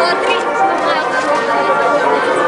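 Crowd chatter: many people talking at once, close by, in a steady hubbub of overlapping voices with no single clear speaker.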